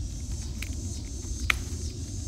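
Steady low rumble on a phone microphone with a faint high insect hum, and one sharp snap about one and a half seconds in as a ripe tomato is snapped off its vine.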